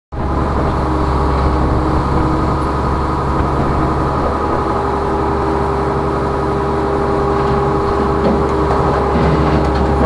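Rollback tow truck running steadily: a low engine hum with an even, unchanging whine on top.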